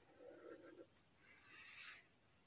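Faint strokes of a felt-tip sketch pen drawing on paper: two short strokes with a small tap between them.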